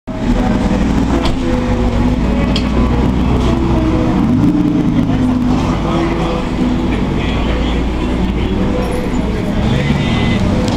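Engines of exotic sports cars, a Maserati GranCabrio's 4.7-litre V8 and an Aston Martin Vanquish's V12, running at low speed as the cars drive slowly past in town traffic; the engine notes rise and fall gently.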